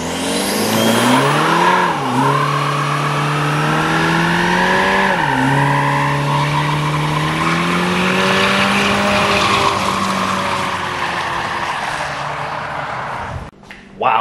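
Cadillac ATS's 2.0-litre turbocharged four-cylinder engine revving high while the rear tyres spin and squeal in a burnout. The engine pitch climbs, drops sharply twice, about two and five seconds in, then holds high and slowly rises before the sound cuts off shortly before the end.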